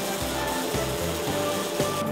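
Instrumental background music with steady held tones over a pulsing low bass.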